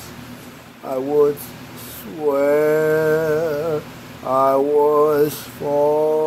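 A man singing a slow song, holding long notes with vibrato, in phrases broken by short breaths: one brief phrase about a second in, then longer held notes after two seconds, four and a half seconds, and near the end.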